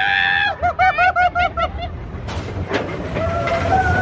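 A person laughing in a quick run of short bursts, then a mine-train roller coaster rumbling along its track with a few sharp clanks.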